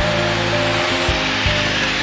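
Steady drone of a single-engine light aircraft's piston engine and propeller, heard inside the cabin while the plane climbs.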